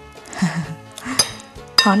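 A metal spoon and wooden chopsticks clinking against a glass bowl as pork chops are turned in a wet marinade, with sharp clinks about a second in and near the end. Soft background music plays underneath.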